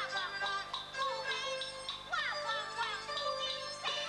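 A woman singing a Teochew opera aria with instrumental accompaniment, her melody wavering and gliding between held notes.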